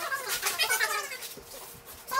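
Plastic garbage bags and packaging rustling and crinkling as they are pulled apart and sorted. A high, wavering vocal sound comes in the first second, then the rustling trails off.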